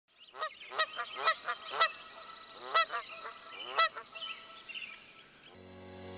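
A bird honking: about nine short, pitched honks, spaced unevenly over about four seconds, with a pause near the middle, then fainter calls.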